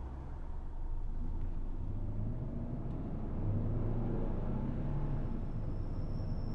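Low, steady rumble of a car heard from inside the cabin, engine and road noise with no other clear event.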